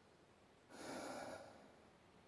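Near silence, broken in the middle by one soft breath of under a second, a person drawing air through the nose.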